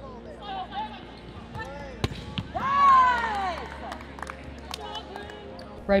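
Volleyballs being struck and passed in an echoing indoor arena, with sharp knocks of ball contacts and players' voices calling. One drawn-out call rises and falls about three seconds in and is the loudest sound.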